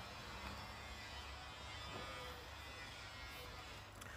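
Faint, steady background hum and hiss with no distinct event.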